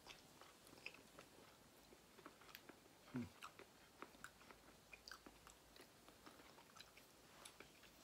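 Faint close-up chewing of soft fruit: small wet clicks and smacks of the mouth, with a brief low hum about three seconds in.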